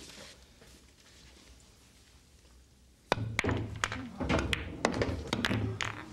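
A pool cue strikes about three seconds in, followed by a quick run of billiard balls clacking together and knocking for about three seconds.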